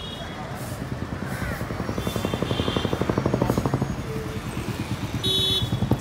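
Small motor-vehicle engine passing close by in street traffic, its rapid even pulsing building up and fading over a few seconds. A brief high tone sounds near the end.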